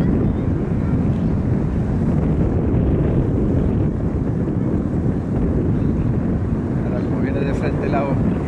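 Wind buffeting the microphone: a loud, steady low rumble with no other distinct sound. A man's voice starts near the end.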